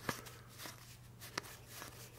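Playing cards handled and flipped through in the hands, faint, with a few soft clicks of card against card, the clearest a little past the middle.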